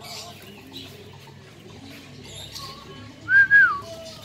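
Racing homer pigeons cooing in the loft, a run of low repeated coos. About three seconds in comes a loud, short whistle that holds level, then drops in pitch.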